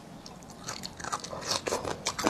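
Crisp crunching as lemon-marinated sour-spicy bamboo shoot strips are bitten and chewed, picked up close by a clip-on microphone. The crunches are irregular, starting about half a second in and coming faster and louder toward the end.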